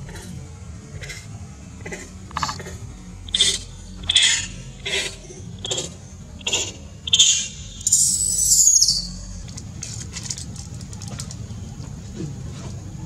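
Infant macaque crying: a string of short, high-pitched squealing cries about once or twice a second, ending in a longer wavering cry near nine seconds in. It is a baby's distress calling at being left by its mother.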